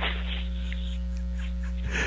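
Steady electrical mains hum in the audio line, with a short soft hiss right at the start.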